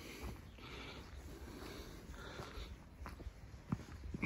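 A person breathing hard while walking uphill on a dirt-and-grass path, out of breath from the climb. The breathing is faint, with a few soft footsteps near the end.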